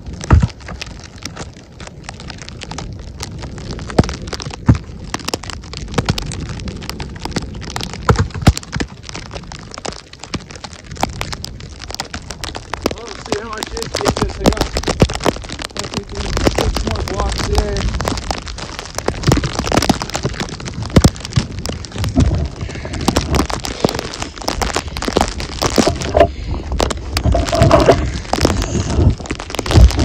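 Firewood rounds being tossed, thudding down one at a time, the first right at the start, over a constant crackling hiss and rumble of wind and falling snow on the microphone.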